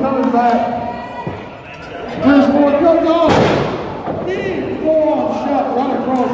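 Spectators shouting, and about three seconds in a single loud slam as a wrestler's body hits the ring mat, ringing briefly in the hall.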